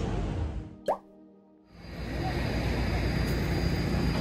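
A short rising 'bloop' sound effect about a second in, marking a cut. Street ambience fades out before it, and after a brief quiet gap a steady outdoor ambience fades in.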